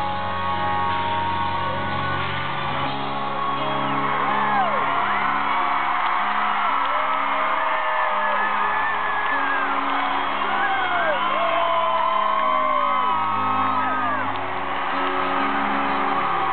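Live rock band playing an instrumental passage led by electric guitars, heard from within the arena audience. From a few seconds in, fans close by whoop and shout repeatedly over the music.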